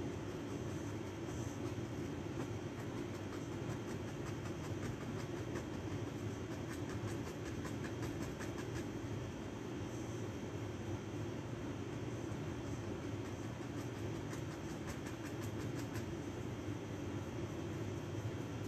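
Steady low hum of room noise, such as air conditioning, with faint rapid light ticks for a few seconds around the middle.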